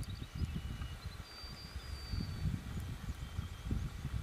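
Outdoor roadside ambience: an uneven low rumble throughout, with a few faint, high, thin tones held briefly in the first half.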